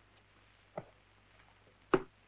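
Near silence broken by two short clicks: a faint one about a second in and a louder, sharper one near the end.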